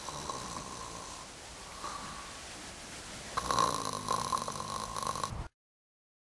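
A man snoring with a whistling tone on the breaths, in three stretches. The sound cuts off suddenly near the end.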